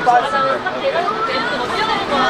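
Voices talking: speech and chatter throughout, with no other sound standing out.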